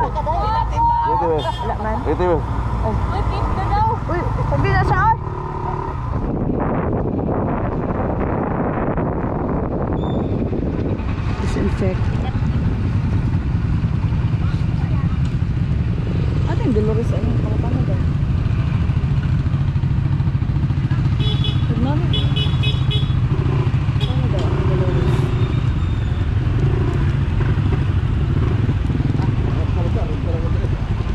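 A motorcycle engine running steadily while being ridden. Voices can be heard over it in the first few seconds.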